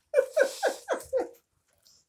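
A woman laughing: five quick breathy bursts, each falling in pitch, over about a second and a half.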